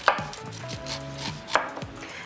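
Chef's knife slicing kernels off an ear of corn stood upright on a dish towel over a wooden cutting board. The blade scrapes down the cob, with a sharper knock at the start and another about a second and a half in.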